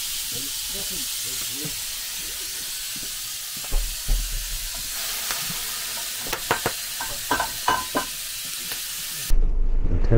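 Wood fire burning in a clay stove under a kettle: a steady hiss with scattered crackles between about six and eight seconds, and a low thump about four seconds in.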